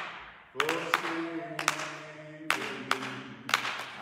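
A man singing a gospel chorus unaccompanied in long held notes, clapping his hands along with it. The voice drops out briefly at the start and comes back about half a second in.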